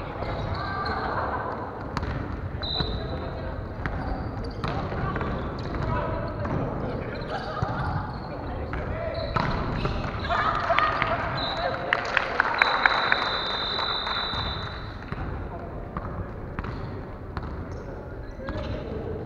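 Volleyball rally in a large gym hall: a ball struck with sharp slaps several times, loudest in a cluster about two-thirds through, over players' calls and chatter.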